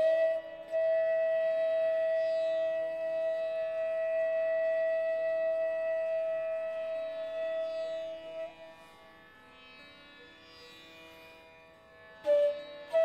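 Bansuri (Indian bamboo flute) playing raga Malkauns unaccompanied by tabla, holding one long steady note for about eight seconds before it fades away. A soft plucked-string drone continues quietly underneath.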